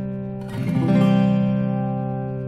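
Morris F-30 steel-string acoustic guitar played: a chord already ringing, then a new chord strummed about half a second in that rings out and slowly fades.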